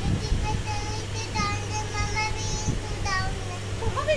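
A child singing in a high voice, holding long, slightly wavering notes over a steady low hum.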